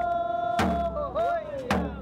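A voice holding a long sung note that breaks into short wavering glides about halfway through, with a deep hand drum struck twice about a second apart.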